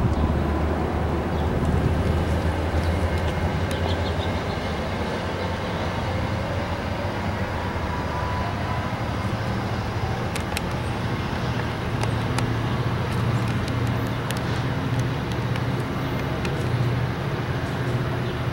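Virginia Railway Express commuter train pulling away along the platform: a steady rumble of wheels on rail with a low engine hum from its diesel locomotive. A few light, sharp clicks come from the train about halfway through.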